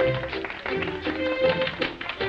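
Orchestral music from the silent-film score, with sustained melody notes over a bass line and short, plucked or tapped note attacks.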